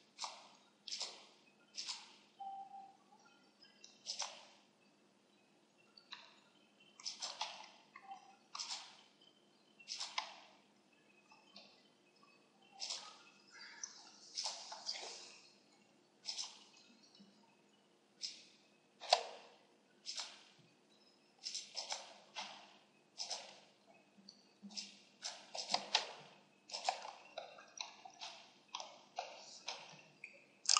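Computer mouse and keyboard clicks: short, sharp clicks at irregular intervals, sometimes two or three close together, over a faint steady hum.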